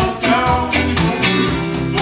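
Live band playing a reggae song: a held bass line under drums and guitar, with a steady beat of about four sharp strokes a second.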